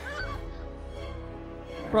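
Film soundtrack playing: a quiet score of sustained tones over a steady low rumble, with a brief pitched cry just at the start.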